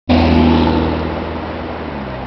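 Motor vehicle engine running close by: a steady low hum over road traffic noise, loudest at the start and fading gradually.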